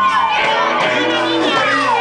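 Live band music with a high voice singing a melody that slides up and down, and the crowd shouting and cheering along.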